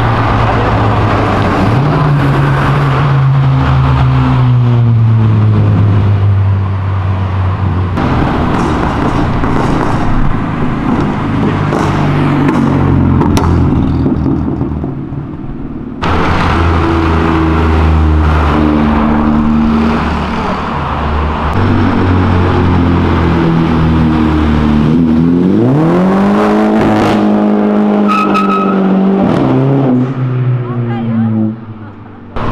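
Loud car engines accelerating and revving on a street, cut together from several short clips so the sound changes abruptly a few times. Near the end one engine revs up in a strong rising sweep.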